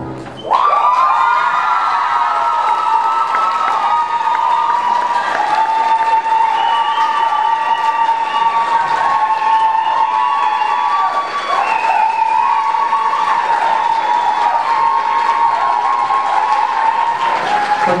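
Audience applauding and cheering, starting suddenly about half a second in, with sustained high-pitched cheering over the clapping that runs on for many seconds.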